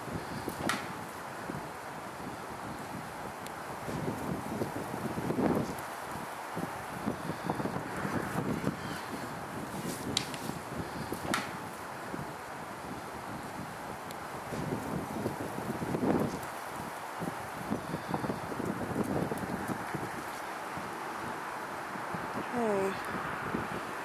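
Wind buffeting the microphone in gusts, with a few sharp clicks.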